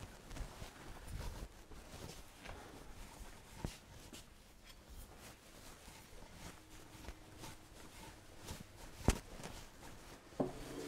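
Faint room tone with a few scattered small knocks and clicks, the sharpest about four seconds in and again about nine seconds in.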